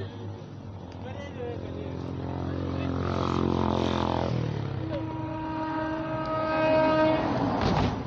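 A motor vehicle's engine passing close by, its note swelling louder over the first few seconds, then changing to a higher steady pitch that peaks near the end before cutting off suddenly.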